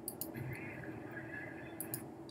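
A few soft computer-mouse clicks, a couple just after the start and a pair near the end, over a faint room hum.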